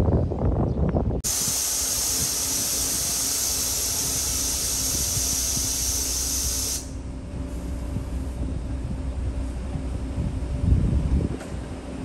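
A Hyundai coach idles at a standstill while a long hiss of compressed air escapes from its air system, typical of air brakes or suspension venting. The hiss lasts about five and a half seconds and cuts off suddenly. Before it comes a second of wind buffeting the microphone, and there is a short thump near the end.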